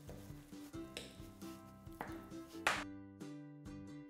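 Soft background music, with a few scrapes and taps of a fork mashing avocado on a cutting board; the sharpest tap comes near three seconds in.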